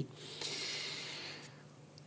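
A loose sheet of paper sliding off a notebook page: a faint, soft hiss about a second long that fades out.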